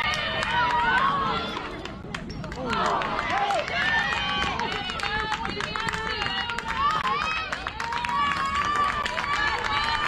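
Spectators and players cheering and shouting together after a softball hit, many overlapping voices rising and falling, with scattered sharp claps or clicks.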